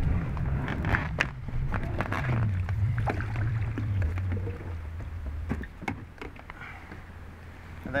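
An inflated packraft loaded with a bike being pushed across pontoon decking and slid into a river, with a low rumble of it dragging for the first five seconds or so and scattered knocks and taps of the bike and raft being handled.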